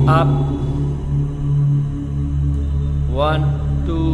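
Background music with a steady low drone, like a chanted mantra track, under a man's voice that says "up" at the start and begins counting about three seconds in.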